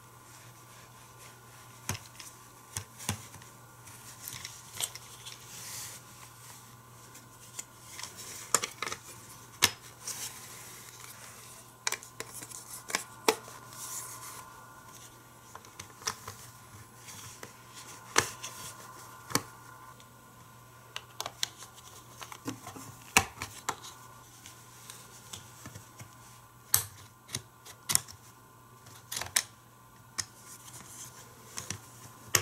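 Hard plastic toy track pieces being handled and fitted together: irregular clicks, taps and rubbing of plastic on plastic, with a few sharper snaps, over a faint steady hum.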